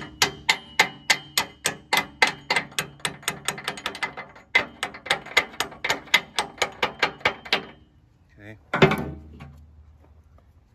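Rapid hammer blows on a steel pivot pin, about four a second with a metallic ring, driving the worn upper hydraulic cylinder pin out of a skid steer's Bob-Tach quick attach. The blows pause briefly about four seconds in and stop near the end.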